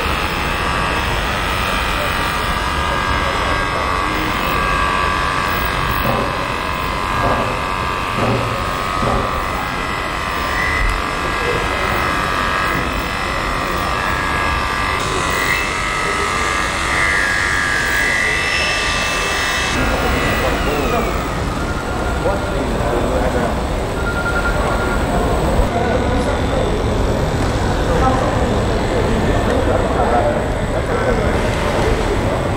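Electric livestock clippers buzzing steadily as a Holstein cow's hair is trimmed for showing, over a constant din of voices and barn noise. The clipper's whine stops about twenty seconds in.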